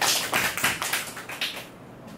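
Handheld microphone being handled as it is passed from one person to another: a run of irregular knocks and rubs over about a second and a half, louder than the speech around it.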